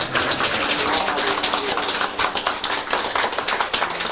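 A small group of people applauding, many hands clapping steadily, with laughter and voices mixed in.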